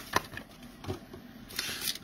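Torn booster-pack wrapper crinkling and rustling as it is handled, with a few light clicks near the start and a brief louder rustle near the end.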